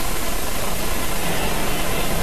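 Steady rushing noise, even across high and low pitches, with no distinct events.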